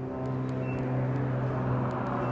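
An engine running steadily nearby: a low hum holding one pitch over a background rush of outdoor noise.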